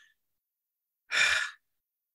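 A person sighing: one breathy exhale into the microphone, about half a second long, a second in.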